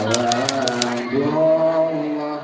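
Typewriter key-click sound effect, about five clicks a second, that stops about a second in, over a voice singing long held notes.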